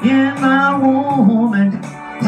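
A woman singing one long drawn-out note into a microphone, stepping down in pitch about halfway through and breaking off shortly before the end, over a karaoke backing track with guitar.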